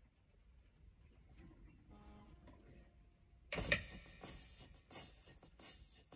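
Near silence for the first few seconds, then an acoustic guitar starts playing the song's introduction, its strokes coming less than a second apart.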